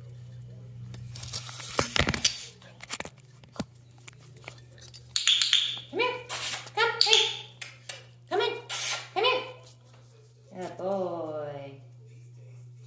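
A young puppy whining and yipping close to the microphone: a run of short, high-pitched cries from about five seconds in, ending in a longer falling whine. Before that, brief rustling and knocks as the puppy bumps against the phone, over a steady low hum.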